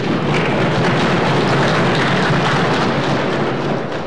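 Applause from a room of people: a dense, steady clapping that swells up just after the start and dies away near the end, greeting a welcome.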